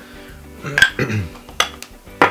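A few sharp metallic clinks of small metal nail tools being picked up and handled on a desk, over quiet background music.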